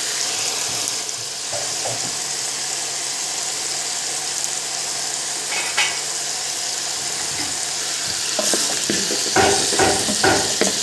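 Chunks of mutton with onions and turmeric sizzling steadily as they fry in a large aluminium pot. Near the end a spoon stirs the meat, knocking against the pot a few times.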